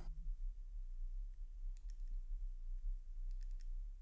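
A few faint, scattered clicks of watchmaker's tweezers and tools against the small steel parts of a Valjoux 22 chronograph movement as a spring is fitted, over a low steady hum.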